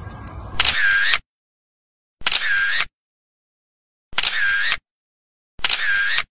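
A camera shutter sound effect, four identical shutter clicks spaced about one and a half to two seconds apart, with dead silence between them. Faint background hiss comes just before the first click.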